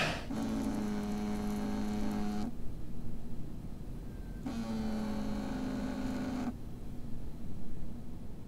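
A smartphone on a hard stone tabletop buzzing for an incoming call: two steady buzzes of about two seconds each, two seconds apart.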